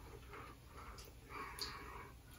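Faint chewing and mouth noises of a person eating a bite of soft Nutella fudge, with a few soft puffs and a couple of small clicks.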